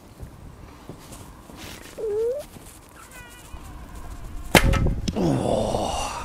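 A 140 lb English longbow loosed: a sharp crack about four and a half seconds in, then a second sharper sound and the rushing whoosh of the arrow in flight, falling in pitch.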